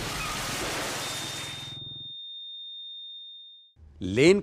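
Crash sound effect for a scooter hit in traffic: the noise of the impact dies away over the first two seconds while a single steady high-pitched ringing tone comes in about a second in and holds, then cuts off just before the end.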